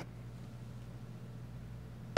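Quiet room tone: a faint steady low hum under light hiss.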